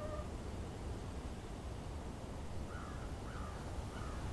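Steady outdoor background noise with a low rumble, and a bird giving three short calls in the second half, a little over half a second apart.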